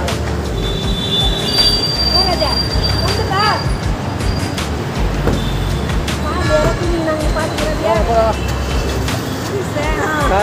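Excited voices of people greeting one another, in short rising calls rather than steady talk, over a heavy low rumble of wind and handling on a phone microphone. A thin high steady tone sounds for about two seconds early on.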